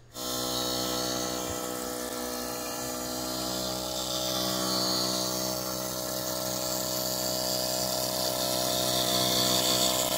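Automatic spectacle lens edger grinding a lens to shape under water coolant: a steady motor hum with a hiss of spraying water that swells and fades slowly.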